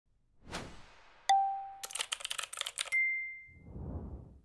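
Animated logo intro made of sound effects: a short whoosh, a bell-like ding, a quick run of keyboard-typing clicks, a second higher ding, then a low swelling whoosh.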